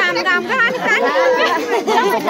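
Many women's voices at once, overlapping and chattering loudly together, with no break.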